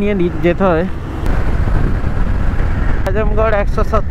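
Wind and road noise from a motorcycle riding at highway speed, a steady low rush, with the rider's voice over it in the first second and again near the end.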